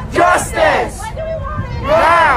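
A crowd of protesters shouting together, with two loud shouted calls in the first second and a steady crowd din behind them.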